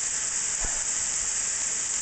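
Steady high hiss of food sizzling in a frying pan on an electric stove, with one faint knock about two-thirds of a second in.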